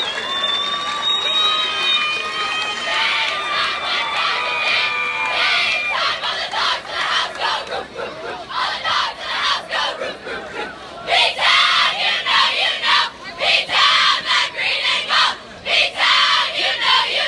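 A huddle of high school cheerleaders shouting together: held, drawn-out yells at first, then a rhythmic chant of short shouts that grows louder over the last few seconds.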